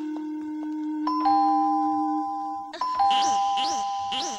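Two-tone ding-dong doorbell chime, rung twice: once about a second in and again near the end. Under the first chime, the last held note of the background music fades out. After the second chime comes a run of quick falling chirpy tones.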